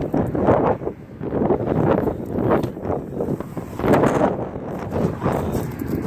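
Wind buffeting the microphone in uneven gusts, a rumbling rush that rises and falls.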